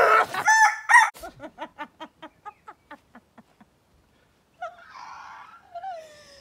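A man's loud yell of pain as a wax strip is ripped off his leg. It is followed by a rapid run of cackling laughter that fades out over a couple of seconds, then a breathy gasping laugh near the end.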